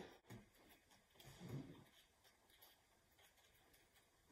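Near silence: room tone, with a few faint soft sounds of marshmallows being set down by hand on a table, about a third of a second in and around a second and a half in.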